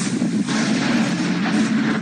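Loud thunder from a close lightning strike, a dense rumble that carries on steadily without a break.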